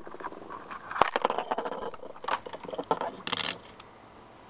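Plastic blister packaging of a Matchbox die-cast toy crackling and crinkling as it is pulled open and peeled from its card backing by hand, with a sharp click about a second in.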